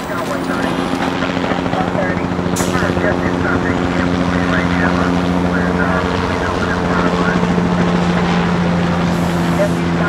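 A steady, droning hum made of several held low tones, swelling over the first couple of seconds, with faint voice-like chatter over it.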